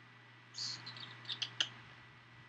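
Faint high squeaky rustling from about half a second in, with two sharp clicks about a second and a half in.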